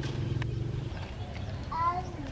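A young macaque gives a short high-pitched squeak that rises in pitch near the end. Under it, a low steady hum stops about halfway through.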